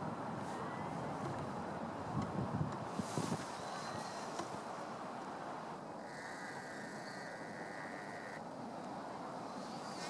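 Steady outdoor background hum, typical of distant city traffic, with a few brief low knocks about two to three seconds in.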